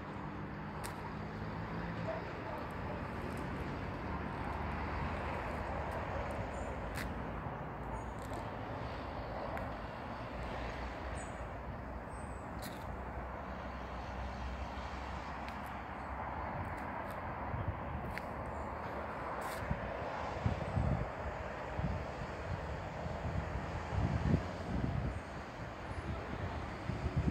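Steady outdoor background noise, with a few uneven low thumps on the microphone in the last several seconds.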